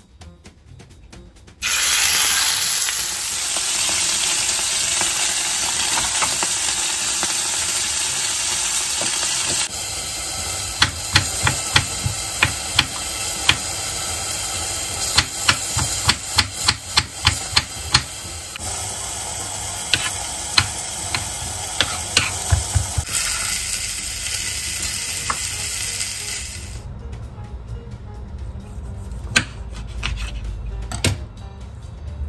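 Beef steak sizzling in hot oil in a frying pan: a loud, steady hiss that starts about two seconds in and stops near the end. From about ten seconds in, a knife chops on a cutting board over the sizzle, in quick runs of sharp strikes.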